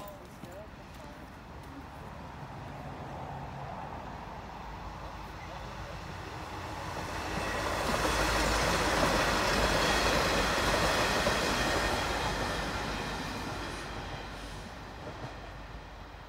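Two coupled V/Line Sprinter diesel railcars approaching and passing, their engine and wheel noise building gradually, loudest from about eight to twelve seconds in, then fading as they move away.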